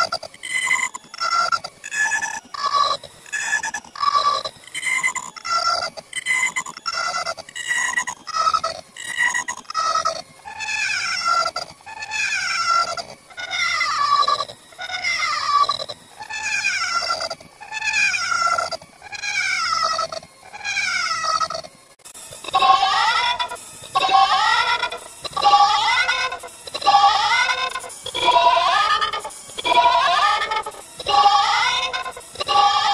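A short cartoon voice clip looped over and over, heavily pitch-shifted and distorted so that each repeat sounds like a bleat. It repeats about one and a half times a second with a falling pitch, and about 22 seconds in it changes to a slower loop that rises in pitch.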